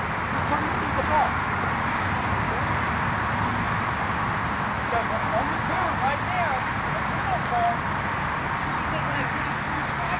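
Distant outdoor voices over a steady background hum, with a run of short rising-and-falling calls from about halfway in.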